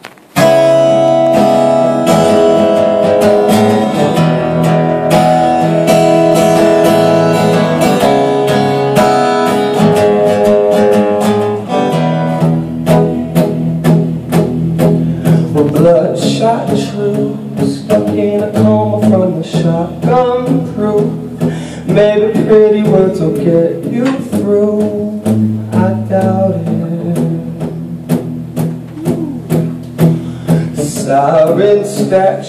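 Acoustic guitar played live, starting abruptly about half a second in. Ringing held chords last for roughly the first twelve seconds, then give way to a steady strummed rhythm with a moving bass.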